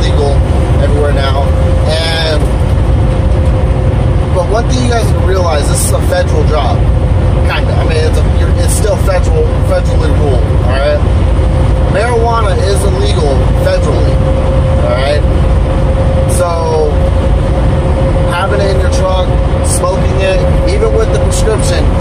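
Semi truck cab at highway speed: a steady low engine and road rumble, with a steady tone running under it. A man's voice talks over it at intervals.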